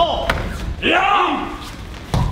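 Aikido practitioners' kiai shouts: a short one with the slam of a body hitting the mat in a breakfall right at the start, then a longer shout about a second in.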